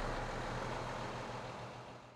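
A tour coach driving away, its engine running low and steady, the sound fading out toward the end.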